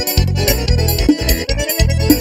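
Piseiro-style forró music played on keyboards, with an accordion-like melody over a heavy bass line and a steady, quick drum beat.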